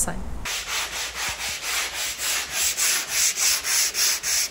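Hand sanding a plywood panel with sandpaper on a sanding block, stroked back and forth about three times a second, starting about half a second in.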